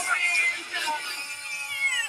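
A cat-like meow dubbed in place of the MGM lion's roar, falling in pitch near the end, over a sustained music chord.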